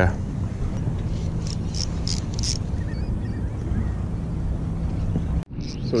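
A boat engine running with a steady low hum, and a few short high ticks about two seconds in.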